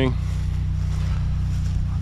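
An engine running steadily, a low, even hum that holds without change.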